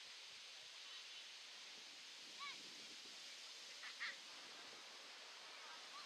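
Faint, steady outdoor hiss with two brief distant shouts from players on the pitch, about two and a half and four seconds in.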